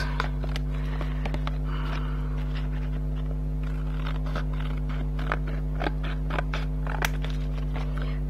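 Scissors snipping and thin card rustling and scraping as the edges of an embossed card panel are cut, in a series of short, irregular clicks. Under them runs a steady low hum.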